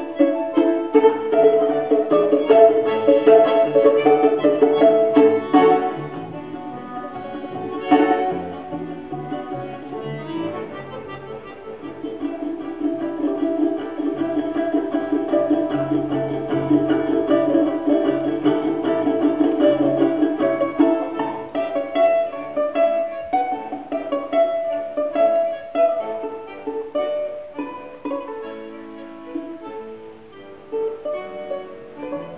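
Live Russian folk trio: a domra and a balalaika plucked in fast repeated notes over a bayan button accordion, playing a tune. Loud at first, softer for a few seconds with one sharp accent, swelling again in the middle and easing off near the end.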